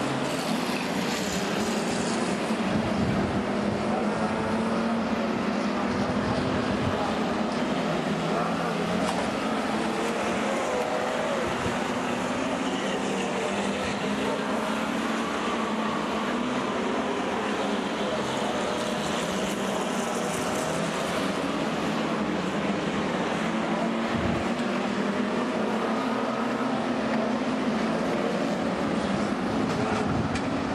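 A pack of dirt-track stockcars racing, their engines making a continuous dense din whose pitch keeps rising and falling as the cars accelerate down the straights and lift for the corners.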